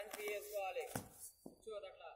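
People's voices talking or calling out, with a single sharp click about a second in.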